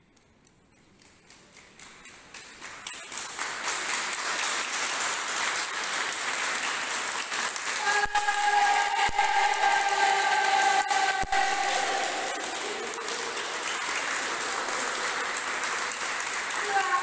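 A group of people doing a crescendo clap: hand claps start very soft and grow steadily louder over the first few seconds into loud, fast, sustained applause. A long held shout from the group's voices joins in about halfway through.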